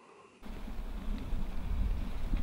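Near silence, then about half a second in a steady low rumble of wind buffeting the microphone.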